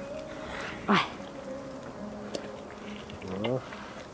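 An Amur tigress feeding on raw meat, with a few soft clicks from her chewing and licking. A faint, steady insect-like buzz runs under it.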